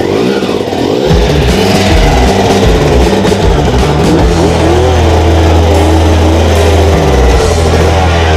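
Honda CR two-stroke dirt bike engine kicked over and running, its revs rising and falling, now starting after a chunk of dirt was cleared from the carburetor's pilot jet. Loud rock music plays over it.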